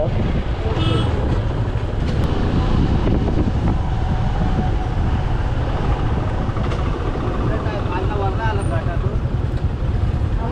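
Wind noise on the bike-mounted camera microphone, with a Benelli TRK 502 parallel-twin motorcycle engine running underneath at low road speed.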